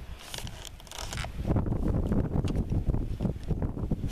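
Wind buffeting a handheld camera's microphone, with rustling from the camera being moved. It grows louder and rougher about a second and a half in.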